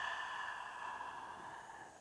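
A woman's long, breathy open-mouthed sigh, an unvoiced exhale that slowly fades away: the release breath of a yoga breathing exercise, heard close on a headset microphone.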